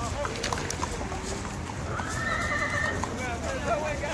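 Horses' hooves clopping irregularly as a group of horses walks, with one horse neighing for about a second, about two seconds in, over people talking.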